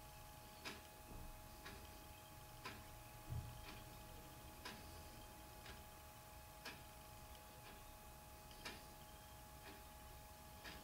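Near silence with faint, regular ticking about once a second, every other tick louder, and a soft low thud about three seconds in. A faint steady whine sits underneath.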